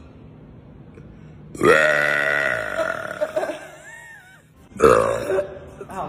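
A woman's long, loud burp about a second and a half in, its pitch falling as it trails off, followed by a short second burst near the end.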